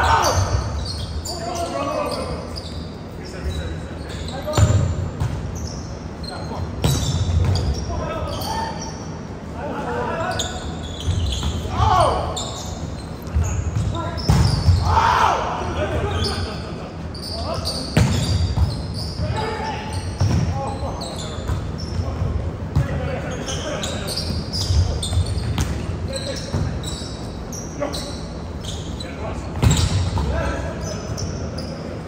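Volleyball game in a large gym: the ball being hit and bouncing on the hardwood floor, with players shouting and calling to each other, everything ringing in the hall.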